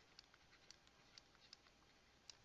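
Near silence with faint, irregular ticks of a stylus on a drawing tablet as handwriting is written.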